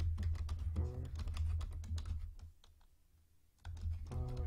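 Typing on a computer keyboard: a quick run of keystrokes, a pause of about a second past the halfway mark, then typing again near the end, over a steady low hum.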